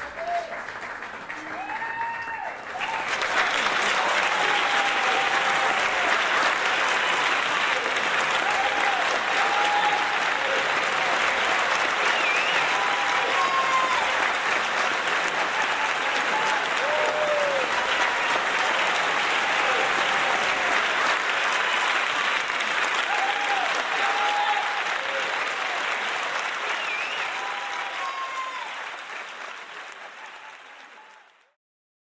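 Audience applauding after a performance, swelling about three seconds in, with voices calling out over the clapping, then fading out near the end.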